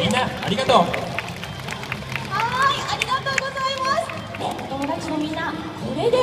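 A woman talking to an audience through a microphone and outdoor public-address loudspeakers.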